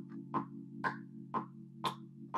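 Rhodes electric piano patch holding a low chord while a metronome clicks steadily twice a second, four clicks.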